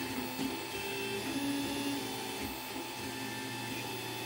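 Home-built 3D printer running mid-print, its stepper motors humming as the print head moves, the tone stepping to a new pitch with each move every half second or so.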